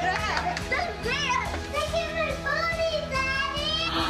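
Excited children's voices, high and sliding in pitch, over background music.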